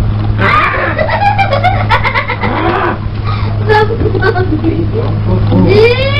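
Children's voices talking over one another, not clearly worded, with a steady low electrical hum under them throughout.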